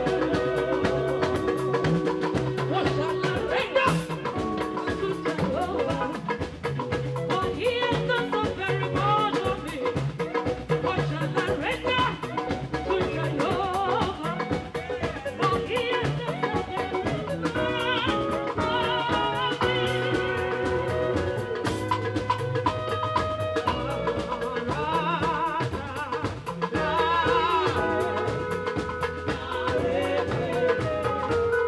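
Live band music: women singing over a drum kit and keyboard with a steady beat.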